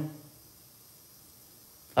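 A pause between a man's spoken phrases: the end of his last word fades out just after the start, then only a faint steady hiss of room tone until he speaks again at the very end.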